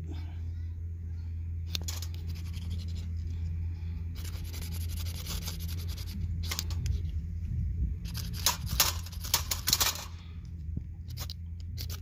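A ferro rod (fire steel) scraped hard with a metal striker to throw sparks onto cotton wool tinder: a run of rasping strokes, with several quick strikes in a row about two-thirds of the way through. Wind rumbles steadily on the microphone underneath.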